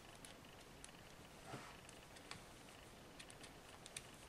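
Faint, irregular clicking of metal circular knitting needles as stitches are worked, with a brief soft rustle about one and a half seconds in.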